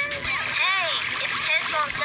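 High-pitched cartoon character's voice whose pitch sweeps up and down in arches, with a quick warbling run near the end.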